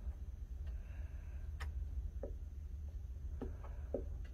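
A few faint, scattered clicks and taps as a glue stick is worked over construction paper on a tabletop, over a low steady hum.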